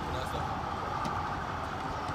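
Steady outdoor background noise with a low rumble, with faint distant voices.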